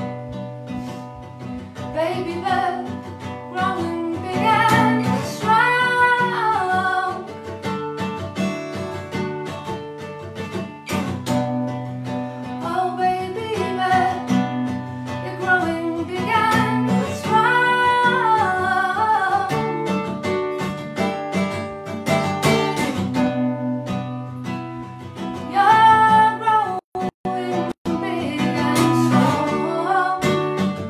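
Strummed acoustic guitar with a woman singing over it, a live acoustic duo song. The sound cuts out briefly a few times near the end.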